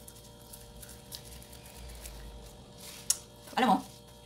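Faint mouth sounds of guava leaves being chewed and rubbed against the teeth, with a few small clicks and one sharper click about three seconds in. A woman's voice starts speaking near the end.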